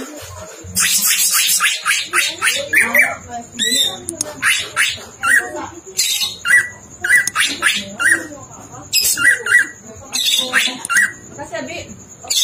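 Male greater green leafbird (cucak ijo) singing hard in a cage: a fast string of varied chirps, whistles and harsh chatter, rich in mimicked notes. From about five seconds in, one short, sharp note comes back again and again between the other phrases.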